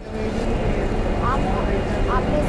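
Steady low rumble of background noise with faint voices of people talking.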